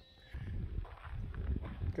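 Soft footsteps on sandy ground under a low, uneven rumble of wind on the microphone.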